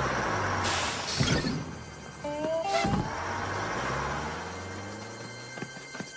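A bus pulling up with its engine running, letting out a loud hiss of air brakes about a second in and a shorter hiss near three seconds, the second hiss just after a brief high squeal.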